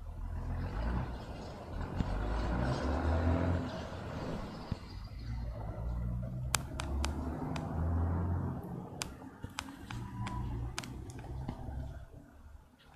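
Street traffic going by: a low rumble that swells and fades as vehicles pass. In the second half comes a run of sharp clicks.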